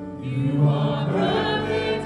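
Worship music with a group of voices singing together, holding long, slow notes with vibrato.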